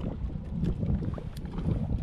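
Wind buffeting the microphone in gusts, with small waves slapping against the kayak hull and a few faint sharp clicks.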